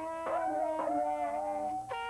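Jazz music: a trumpet holds one long, slightly wavering note over a lower sustained note.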